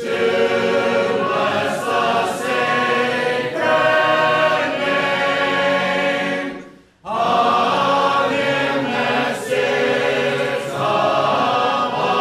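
A congregation singing a hymn together unaccompanied, in sustained phrases, with a short breath pause between lines about seven seconds in.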